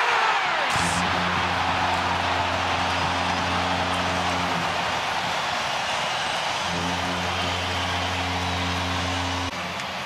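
Hockey arena crowd cheering a home-team goal, with the goal horn sounding in two long blasts: one from about a second in lasting some four seconds, and another starting after a short gap and running until shortly before the end.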